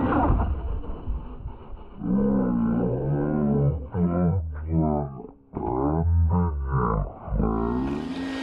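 Electric RC basher's motor and drivetrain revving up and down under throttle: a pitched whine that rises and falls in several surges, with a brief cut around the middle.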